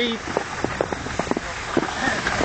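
Snowboard sliding slowly over thin, crusty snow, scraping and crunching with many irregular crackles; the snow cover is too thin for the board to pick up speed.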